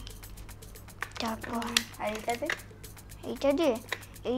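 Light, irregular clicking and clattering of small plastic toy tools being handled and fitted together.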